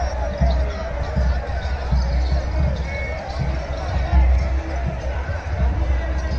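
Loud, steady outdoor din of voices and music from loudspeakers, with irregular low thumps and a heavy low rumble underneath.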